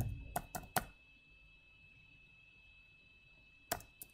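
Computer keyboard keystrokes: a few quick clicks in the first second, a pause, then one more keystroke just before the end.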